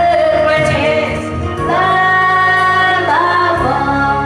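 A woman singing into a handheld microphone over a karaoke backing track, holding a long note with vibrato, then sliding up to a higher note near the end.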